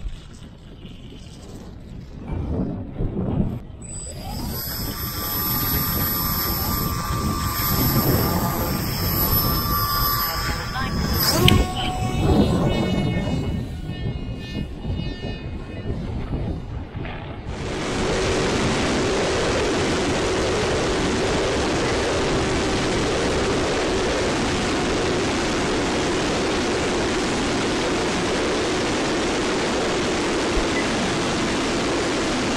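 Brushless electric motor of a ZOHD Dart XL RC plane, a Sunnysky 2216 1250KV, whining at high throttle over wind noise, with a sharp click a little before the middle and the tones falling away afterwards. From a little past the halfway point, a steady, even rush of wind and motor noise heard through the plane's onboard camera.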